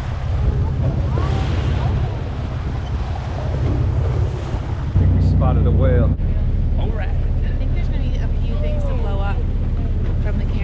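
Steady low rumble of a boat's engine and wind buffeting the microphone at sea, with water rushing along the hull. The rumble is briefly louder about five seconds in, and passengers' voices are heard faintly under it.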